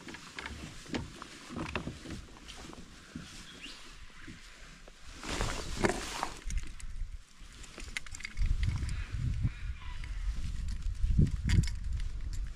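Small clicks and knocks of fishing tackle being handled in a kayak while a lure is changed, with birds calling in the background. A louder harsh burst comes about five seconds in, and a low rumble sets in from about eight seconds in.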